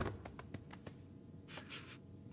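Faint cartoon sound effects of the cat creeping across a sofa cushion: soft taps, then a brief scratchy rustle about one and a half seconds in.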